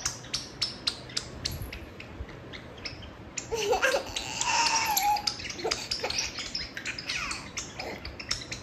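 A baby laughing and squealing in the middle for about two seconds, over a run of sharp clicks that come throughout.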